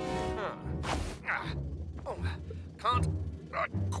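A cartoon character grunting and straining in short bursts of effort as he stretches to reach something just beyond his grasp, over background music.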